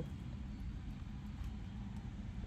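Steady low rumble of a car's engine idling, heard from inside the cabin.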